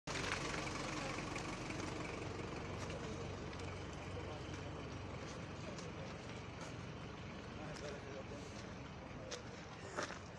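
Indistinct voices over a steady low rumble, with a few faint clicks.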